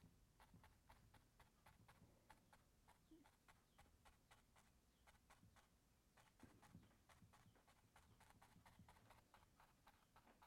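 Near silence, with faint, rapid taps of a small brush dabbing thinned oil paint onto a canvas, several a second.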